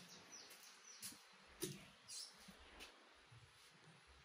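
Near silence: faint room tone with a few soft clicks, the loudest about one and a half seconds in.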